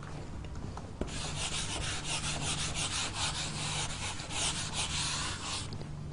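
Felt whiteboard eraser wiping a whiteboard clean in a run of quick back-and-forth strokes. The wiping begins with a light knock about a second in and stops shortly before the end.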